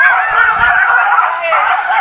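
A dog yelping in loud, high, wavering cries, startled by a toy tiger lying beside it.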